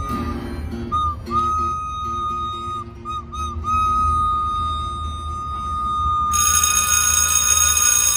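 A recorder holds one high note with a few short trills, over strummed acoustic guitar chords. About six seconds in, a bright shimmering sound effect comes in over the music.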